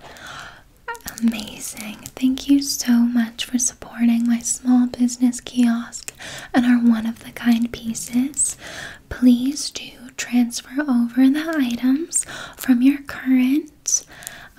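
A woman's voice close to the microphone, talking softly and partly whispering in short phrases, the soft-spoken ASMR style.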